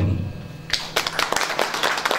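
Audience applauding by hand, breaking out about a second in and continuing as a dense run of claps.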